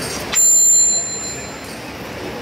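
A small metal bell struck once, ringing with a bright, high tone that fades away over about a second.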